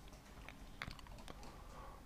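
A few faint, light clicks scattered over quiet room tone.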